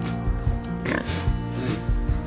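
A pig grunting close by, over steady background music.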